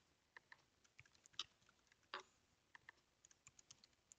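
Faint typing on a computer keyboard: irregular keystroke clicks with short pauses, and a quick run of keys near the end.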